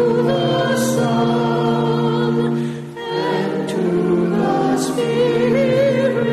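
Church choir singing a hymn in long, held notes in several parts, with a short break between phrases about three seconds in.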